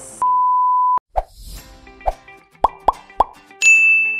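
Intro-jingle sound effects: a steady electronic beep lasting under a second, then a run of quick plops over light music, ending with a bright ringing ding near the end.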